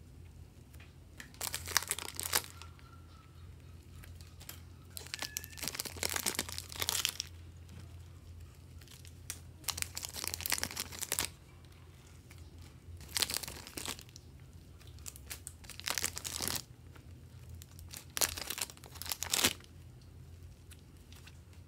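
Clear plastic packaging crinkling as blocks of soft clay are handled and pulled from their bags, in about six separate bursts of a second or two each. A steady low hum runs underneath.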